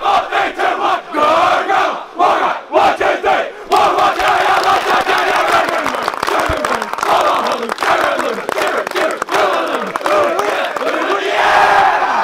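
A large group of schoolboys shouting a war cry in unison: short, sharply separated shouted lines for the first few seconds, then a continuous massed chant.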